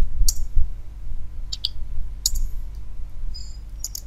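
A few scattered sharp clicks from a computer keyboard and mouse while code is typed and autocomplete items are picked, over a low steady hum.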